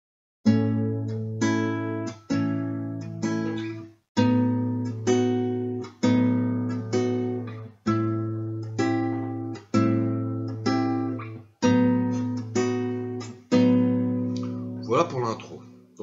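Nylon-string classical guitar fingerpicked slowly: chords plucked with thumb, index, middle and ring fingers together, each ringing out, over an open A bass string, the chord shape moving from A to B to C. There is a brief gap about four seconds in.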